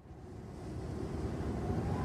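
A swell of noise fading in and growing steadily louder, a riser opening a pop ballad's intro, with a faint rising tone near the end.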